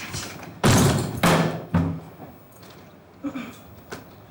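A stage-set door slammed shut: a loud bang a little over half a second in, followed by a second loud sound about half a second later.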